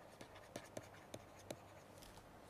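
Faint, irregular ticks and light scratches of a stylus writing on a tablet: a handful of small taps as handwriting is put down stroke by stroke.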